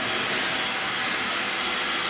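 Vacuum cleaner running with a steady whoosh.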